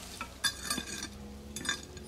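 Faint crackling and scraping handling noise, with a few soft clicks, as a rusty quartz rock is held and turned in the hand.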